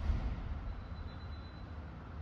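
Steady low background hum in a workshop, with a dull low thump right at the start.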